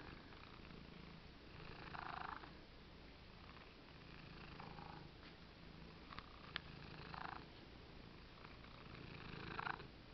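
Tabby cat purring close to the microphone, the purr swelling and fading with its breaths, with a short breathy sound about every two and a half seconds.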